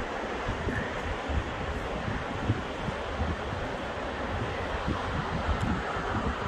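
Wind buffeting the microphone in irregular low gusts, over a steady rushing noise.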